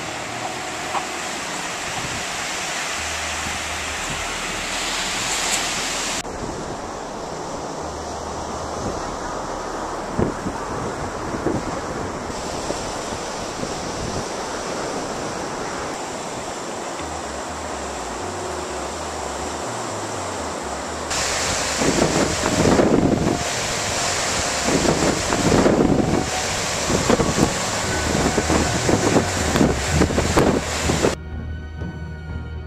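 Ocean surf washing steadily onto a beach. In the last third, wind buffets the microphone in irregular gusts.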